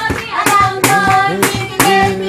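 Children singing a praise song together with rhythmic hand clapping, the claps falling about twice a second.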